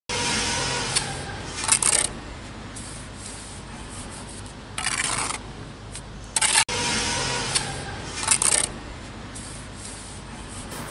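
Steel bricklaying trowel spreading and cutting a wet mortar bed along the top of a brick course: a run of gritty scrapes and rubs, with a few short, sharper scrapes of the blade.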